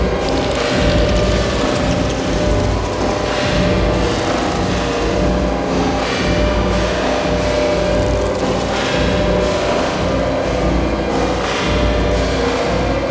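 Improvised industrial electronic music from analog drum machines, an Erica Synths Perkons HD-01 and a Soma Pulsar-23: a dense, pulsing low end under a steady droning tone and noisy upper textures.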